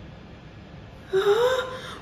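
After about a second of low background, a high-pitched voice gives a short, breathy cry that rises in pitch.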